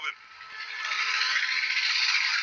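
A ski jumper's skis hissing down the grooved in-run tracks, the noise swelling as the jumper speeds past toward the take-off.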